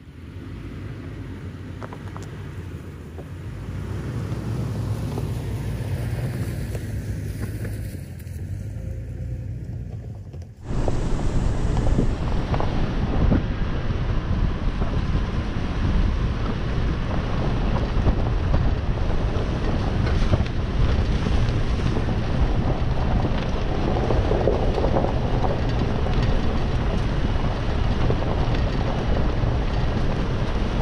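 A 2020 Toyota 4Runner's 4.0 L V6 runs at low speed as the truck crawls over a dirt trail, growing louder as it approaches. About ten seconds in the sound cuts to a louder, steady rumble of wind on the microphone and tyres on the rough dirt track as the truck drives on.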